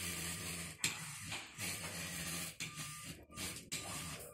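Small electric motors of a LEGO robot car whirring as it drives, with a few brief breaks in the sound.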